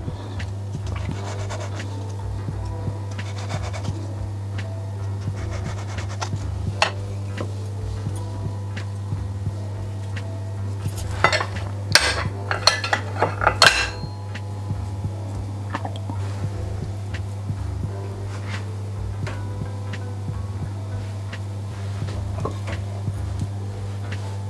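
Light kitchen clatter of utensils on a marble pastry board and metal spoon clinks, scattered throughout with a burst of sharp clinks about eleven to fourteen seconds in, over steady background music.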